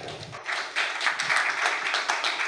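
Audience applauding: many people clapping together, the clapping swelling about half a second in and continuing steadily.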